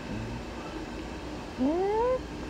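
A newborn baby gives one short cry near the end, its pitch rising over about half a second.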